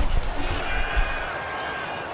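Football broadcast field audio: deep thumps through the first second or so, over a background of crowd noise and faint voices.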